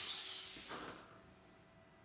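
ArcCaptain Cut 55 ProLux plasma cutter's torch blowing air with a high-pitched hiss just after the arc stops at the end of a cut. The hiss dies away within about a second, then the sound drops to near silence.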